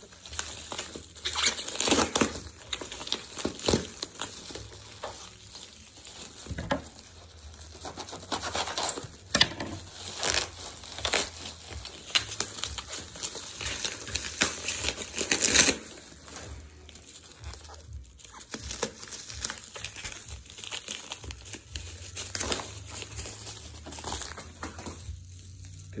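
Plastic bubble wrap being crinkled and pulled off a long wrapped tube: irregular crackling and rustling, with louder bursts about two seconds in, around ten seconds and around fifteen seconds.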